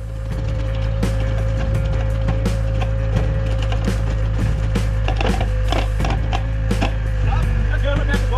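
Daewoo excavator engine running steadily with a constant hydraulic whine, while soil and clumps crackle and knock as they fall from its grapple as backfill.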